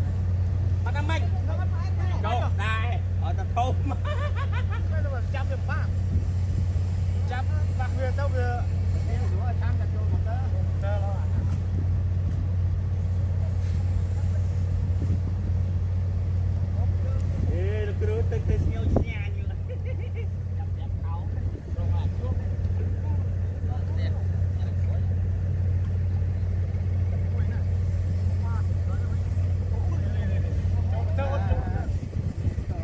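A small engine running steadily at a constant speed, a low even drone, with people's voices talking and calling out over it at times.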